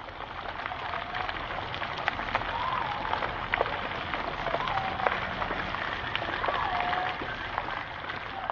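Outdoor ambience: a steady hiss with scattered light ticks, and about six short pitched calls that bend up and down, spaced a second or so apart.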